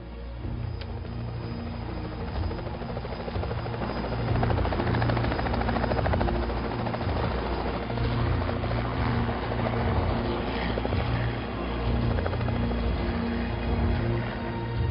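Small helicopter lifting off and climbing away, its rotor making a steady fast chop over the engine, growing louder about four seconds in.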